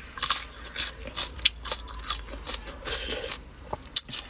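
A person biting and chewing slices of raw, unripe green mango, the firm flesh giving crisp, wet crunches about twice a second close to the microphone.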